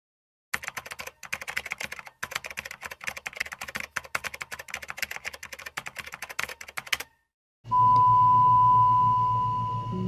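Rapid typing clicks, a typing sound effect accompanying on-screen text being typed out, run for about six and a half seconds. After a brief gap, a steady single-pitched beep tone sounds over a low hum for the last two seconds or so.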